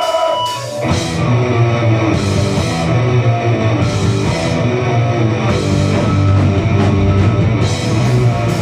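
Rock band playing loud live: a held note rings, then drums and guitars come in together about a second in, starting the song.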